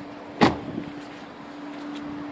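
A Range Rover Sport's door being shut: one sharp, solid thud about half a second in, over a steady low hum.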